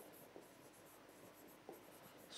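Near silence, with the faint taps and scratches of a stylus writing on an interactive touchscreen board: a few light ticks, one at the start, one about a third of a second in and one near the end.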